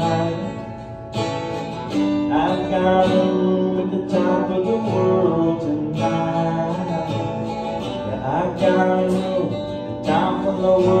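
Acoustic guitar strummed in chords, each strum ringing on until the next.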